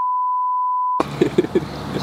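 Censor bleep: one steady high beep lasting about a second, with all other sound muted under it. It cuts off abruptly and laughter follows.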